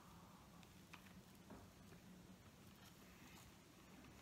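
Near silence: a person quietly chewing a mouthful of soft, warm sandwich bread, with a few faint small clicks.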